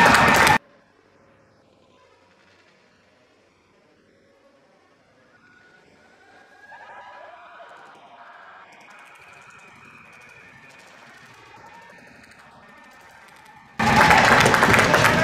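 Faint ice-rink ambience with distant voices, a little louder from about halfway through. Loud crowd noise cuts off abruptly just after the start and returns suddenly at the very end.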